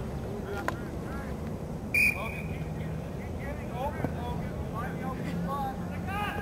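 Distant shouting and calling from lacrosse players and people on the sideline, carried across an open field. About two seconds in comes one sharp, loud crack, followed by a brief high tone.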